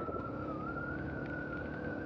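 Suzuki DR-Z250's single-cylinder four-stroke engine running steadily at trail speed, with a thin steady whine on top. It is fairly quiet because its silencer and spark arrester are fitted.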